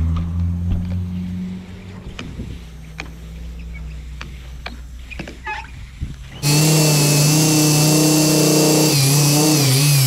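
Handheld electric car polisher with a foam compounding pad running on a car's hood. A steady motor hum at first eases off, and then from about six seconds in it turns much louder. Near the end its pitch wavers up and down as the pad is worked across the paint.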